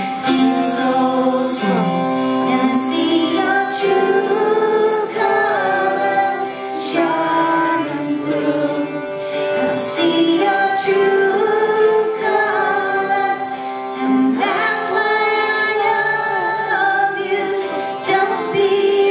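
Slow live music: a harmonica plays long, wavering notes over a plucked Appalachian dulcimer.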